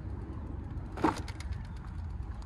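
Wind rumble on the microphone with quiet tyre noise from an electric fat-tire bike's knobby tyres rolling on asphalt, and one short sound about a second in.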